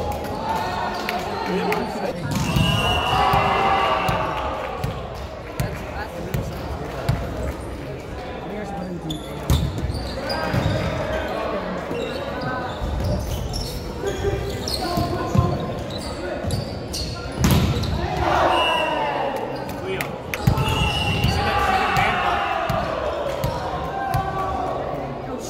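Volleyball rallies in a large, echoing gym: several sharp smacks of the ball being hit. Players shout and call out, in bursts near the start and again near the end.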